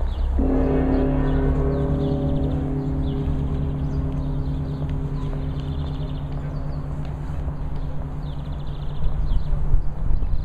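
A large church bell struck once, ringing with a deep hum that fades slowly, its higher tones dying away first.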